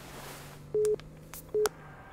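Telephone line tone after the other party hangs up: short, steady beeps at one pitch, two of them, about a second apart, with sharp clicks near the end.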